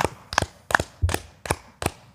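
About six short, sharp taps or knocks, unevenly spaced over two seconds.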